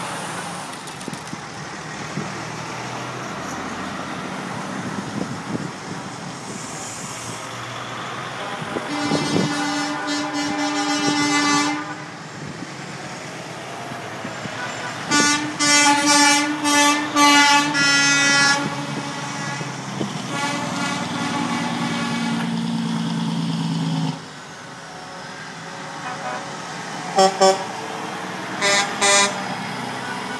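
Semi-truck air horns blowing as tractor-trailers drive past over the drone of their diesel engines. One long blast comes about nine seconds in, a run of short blasts about halfway through, and a few quick toots near the end.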